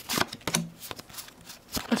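Pokémon trading cards being handled and slid against one another: a series of light, irregular clicks and rustles of card stock.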